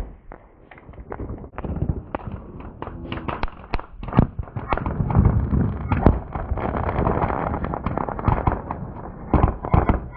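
Firecrackers going off in a rapid, irregular string of sharp bangs and pops, starting sparse and thickening after about two seconds.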